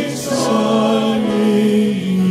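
Music: slow, sustained chords with voices singing together like a choir, and a brief hiss just after the start.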